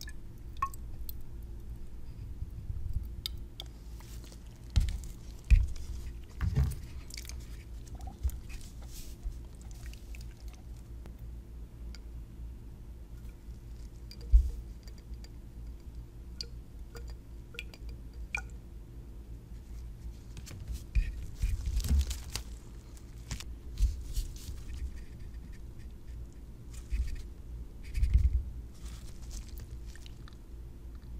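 Handling noises from a 100 mL graduated cylinder being filled with water and held in a gloved hand: scattered small clicks and rustles, with a few soft knocks, the loudest about five and a half seconds in and again around fourteen seconds, over a faint steady hum.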